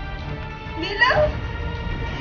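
A woman crying out in a short wail about a second in, its pitch rising and then falling, over a steady bed of background music.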